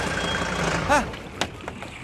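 A minibus engine running as the bus pulls up, then cutting out about a second in, followed by a single sharp click.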